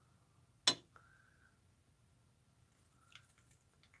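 A single sharp click about a second in, then quiet with a few faint ticks and a brief faint high tone.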